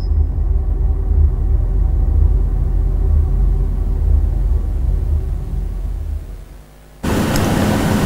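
Deep, low rumbling sound effect from a TV programme's animated title sting. It fades out about six seconds in and is followed by a loud burst of hiss lasting about a second.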